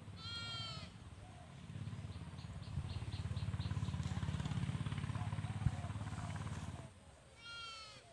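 Two short, high-pitched bleats, one at the start and one near the end. In between, a low rumbling noise runs for several seconds.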